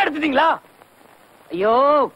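Speech only: a voice speaking two short phrases about a second apart, with faint hiss in the pause between.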